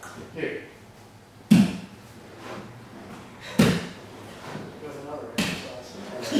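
Three dull thumps about two seconds apart: a body in a gi shifting and landing on a judo mat as a man on his back walks his shoulders and hips across it.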